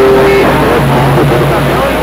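Music coming over the air through a CB radio's speaker, a received transmission with radio hiss underneath. A held note gives way to lower notes about halfway through.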